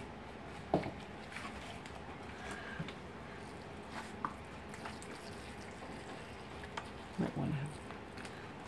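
Faint patter of water sprinkled from a plastic jug with a holed cap onto potting soil in a seed tray, soaking the soil over freshly planted seed tape. A soft knock comes about a second in, and a short spoken word near the end.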